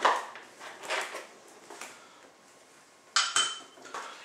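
Small glass measuring vessel knocking and clinking against a plastic bottle as liquid is poured from it: a few light knocks, then a sharper clink with a short ring about three seconds in.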